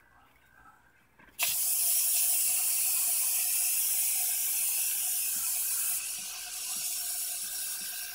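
Aerosol insecticide can spraying: a steady hiss that starts suddenly about a second and a half in, and weakens somewhat about six seconds in.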